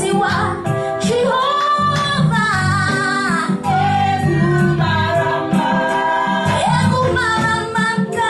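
A woman singing a gospel praise song into a handheld microphone, with electronic keyboard accompaniment holding steady chords under her voice.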